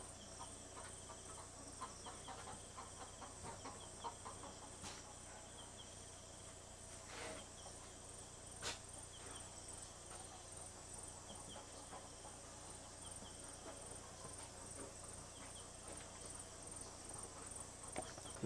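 Faint, steady high-pitched chirping of insects, with a couple of soft clicks about seven and nine seconds in.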